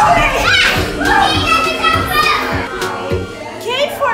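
Young children shouting and squealing as they play, with many high-pitched voices overlapping, over background music.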